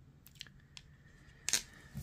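Quiet handling of a pistol and a touch-up pen: a few faint ticks, then one sharper click about one and a half seconds in.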